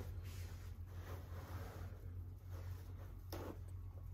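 Paper towel being pulled off a roll: a faint papery rustle with one short tear about three seconds in, over a steady low hum.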